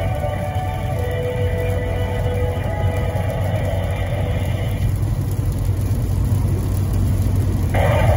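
Music from an AM radio broadcast playing through a car's speakers, fading out about two-thirds of the way through over a steady low hum. A voice starts near the end.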